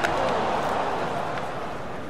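A skateboard knocks once against paving stones, followed by steady outdoor background noise of a gathered crowd.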